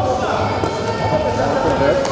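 Several voices shouting and calling at once across an indoor sports hall, overlapping one another.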